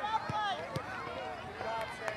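Distant, overlapping voices of soccer players and sideline spectators calling out across the field, with no words clear, and a few short clicks among them.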